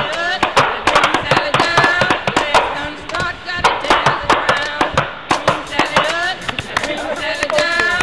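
Paintball markers firing, a quick irregular series of sharp pops, with players' voices calling out among them.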